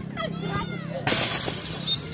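Futsal game: players' shouts, then about a second in a sudden loud crashing rattle that lasts about half a second.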